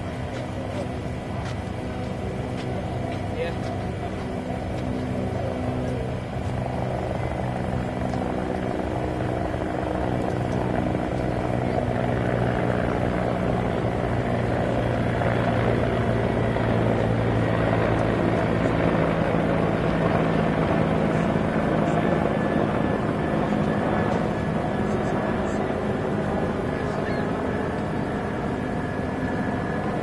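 A steady engine drone with several held tones over a broad rush of noise, growing louder through the middle and easing near the end.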